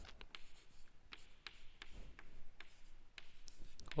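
Chalk writing on a chalkboard: faint, irregular taps and scratches as the chalk strokes out letters.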